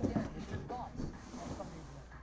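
A man's voice ending a drawn-out spoken word at the start, then only faint low voice sounds over a steady low hum.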